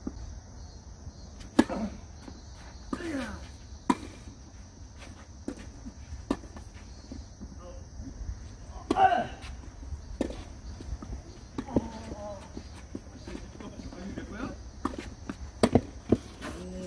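Tennis ball struck by rackets and bouncing on a hard court during a doubles rally: a string of sharp pops, the loudest about a second and a half in and near the end. Players' short calls and shouts come in between, the loudest about nine seconds in.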